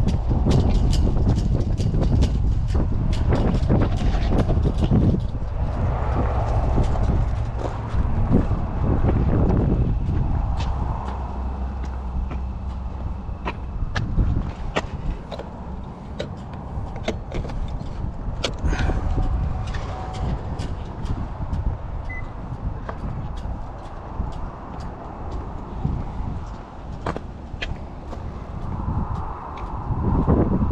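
Wind rumbling on the microphone, heavy for the first dozen seconds and then easing, with scattered clicks and knocks from a charging cable and its J1772 adapter being handled and plugged into a car's charge port.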